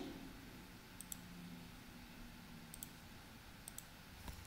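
Faint clicks from a computer's mouse and keys: three close pairs, about a second in, near three seconds, and shortly before the end, over quiet room tone.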